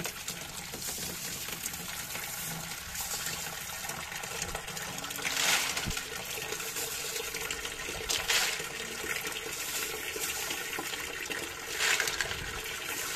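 Running water pouring in a steady stream into a plastic tub, with handfuls of small pebbles dropped into the water making three louder splashes: about halfway through, about eight seconds in, and at the end.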